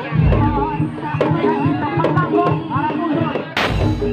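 Live Javanese Bantengan sholawat music: a woman singing into a microphone over a traditional percussion ensemble with large barrel drums. A heavy low drum beat comes just after the start and a loud sharp crash near the end.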